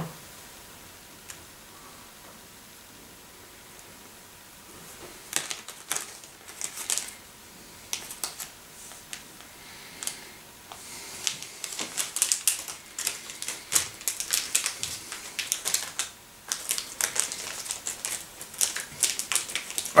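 Close-up chewing of a dry, crunchy Japanese fish candy: irregular sharp crackling clicks that start about five seconds in and grow denser through the second half.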